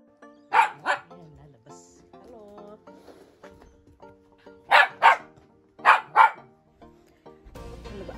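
A dog barking in quick double barks, three pairs of them, over background music with steady held notes.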